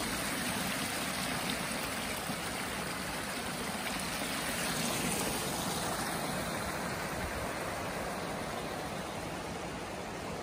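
A small creek running steadily: an even, continuous rush of flowing water.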